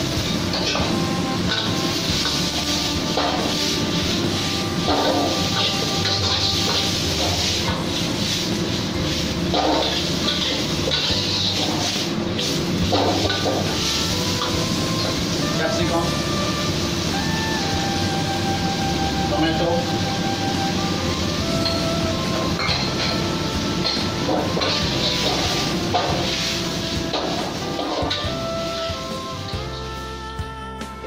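Chopped onion, chillies and capsicum sizzling in hot oil in a wok, with a metal spatula scraping and clinking against the wok from time to time as they are stir-fried. Background music plays throughout.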